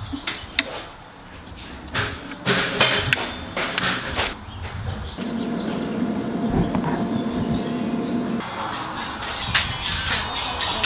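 Several sharp knocks and clicks from equipment being handled, then a few seconds of steady music or tone, which starts about five seconds in and stops about three seconds later.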